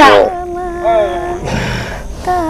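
Long, drawn-out howl-like cries held on one pitch, bending down about halfway through, with a short low grunt near the end.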